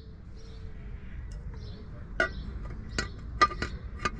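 A few sharp metal clinks, three in quick succession with the last the loudest, as tools and the oil-filter cover are worked back onto a truck's gearbox.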